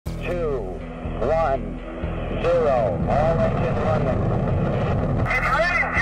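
Radio voice of launch control counting down over the Saturn V rocket's engines, whose low rumble swells from about two and a half seconds in as they ignite.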